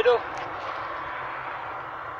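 Steady, even background hiss with no distinct events, after the last word of speech at the very start.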